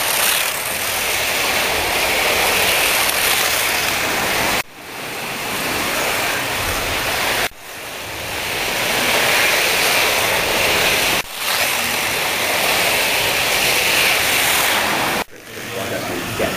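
Several vintage pre-1970 slot cars lapping a multi-lane track: a steady, loud whirring rush of their small electric motors and pickups on the rails. The sound cuts out sharply and builds back up four times.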